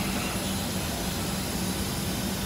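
Steady airliner cabin noise inside a Boeing 737-800: an even hiss with a low, steady hum underneath.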